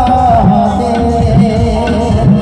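Devotional bhajan accompaniment: a harmonium sustaining reedy notes over a dholak beating a steady rhythm, its bass strokes rising and falling in pitch.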